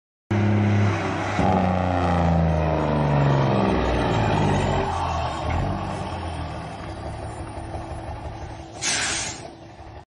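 A large vehicle engine running, its pitch falling over a few seconds as it slows and fades. Then a short hiss of released air near the end, like an air brake.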